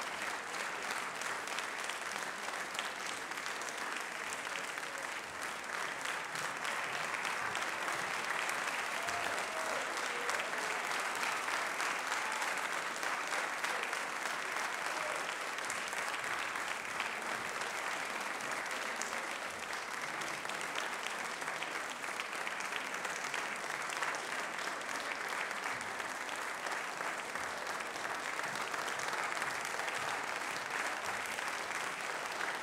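Audience in a concert hall applauding steadily, a dense, sustained clapping that swells slightly about halfway through.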